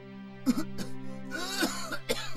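A person coughing: two sharp coughs about half a second in, then a longer hoarse coughing fit, over a soft sustained background music score.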